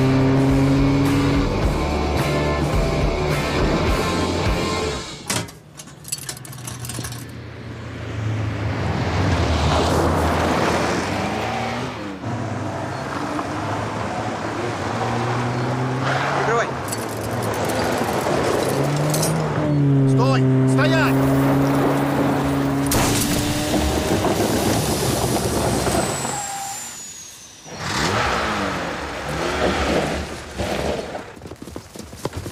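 Lada cars (a Niva and a Zhiguli) being driven hard on a dirt road, with engines running and tyres on gravel, mixed with soundtrack music. The sound dips briefly twice.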